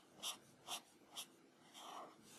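Prismacolor alcohol marker in Scarlet Lake scratching faintly across paper in short colouring strokes, about two a second.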